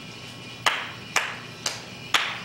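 Three sharp taps, evenly spaced about half a second apart: a count-in for an acoustic band.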